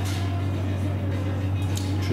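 Bar-room background: music playing over a steady low hum, with a brief click near the end.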